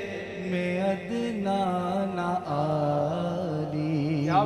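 A man singing a naat, an Urdu devotional poem, solo without instruments into a microphone. He draws out long held, ornamented notes that step lower about halfway through.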